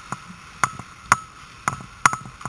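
Ice hockey play on a rink: a series of sharp clacks on the ice, about two a second, over the steady hiss of skate blades.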